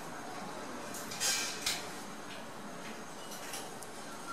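Quiet handling noise from a pearl-beaded strip being pressed onto a thin fabric-covered metal headband. There is a brief rustle a little over a second in and a few small faint clicks later.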